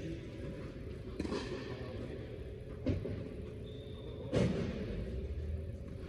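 Tennis balls being struck by racquets on an indoor court: three sharp pops about a second and a half apart, the last the loudest, each ringing on in the hall's echo. A steady low hum runs underneath.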